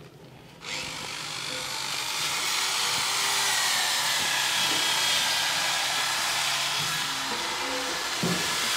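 Electric power tool running steadily on metal, a grinding hiss that starts suddenly about a second in.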